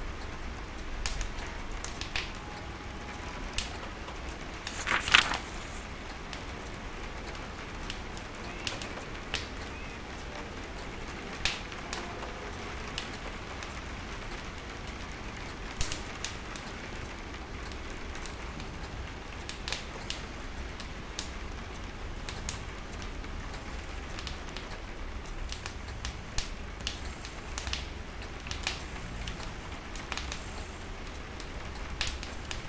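Logs burning in a wood stove, crackling with irregular sharp pops, over steady rain on a window and a low rumble. One louder snap comes about five seconds in.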